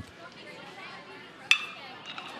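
Faint ballpark crowd noise, then about one and a half seconds in a single sharp metallic ping with a short ring: a metal college bat hitting a pitched ball for a ground ball.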